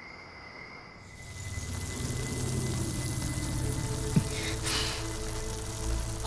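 Animated energy-aura sound effect: a fizzing hiss swells in about a second in and holds over a low sustained music drone, with a brighter whoosh near the end.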